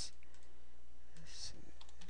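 A few separate computer keyboard keystrokes as a value is typed into a spreadsheet cell, over a low steady electrical hum.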